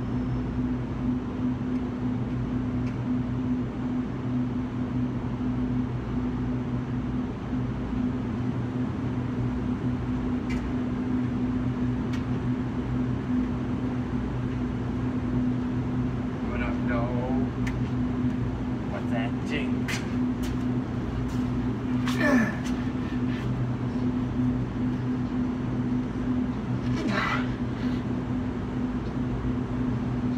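Steady low mechanical hum, with a few short voice sounds and sharp clicks in the second half.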